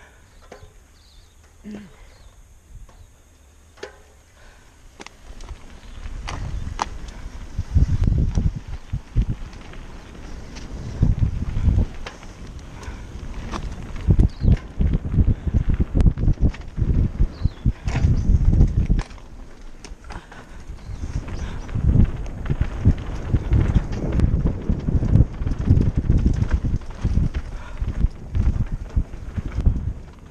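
Mountain bike riding fast down a dirt singletrack, recorded from a helmet camera: wind buffeting the microphone, tyres on dirt and the bike rattling and knocking over bumps. It is quiet for the first few seconds, then builds into uneven rumbling with frequent sharp knocks.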